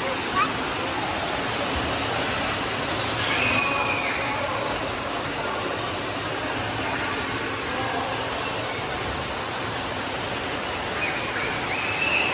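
Steady rush of splashing and spouting water in an indoor waterpark pool, from fountains and slides. Children's high-pitched shouts rise over it briefly about three and a half seconds in and again near the end.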